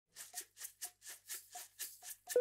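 Shaker played quietly in a steady rhythm, about four shakes a second.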